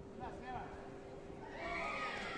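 High-pitched shouts and cries in a large sports hall, growing louder about one and a half seconds in, over a steady faint hum.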